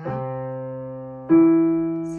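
Piano chords played with both hands: one chord struck and held, fading away, then a second, louder chord struck just over a second in and left to ring.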